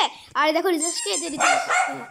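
A child's voice making a drawn-out, high-pitched wordless sound that bends up and down in pitch, starting about a third of a second in.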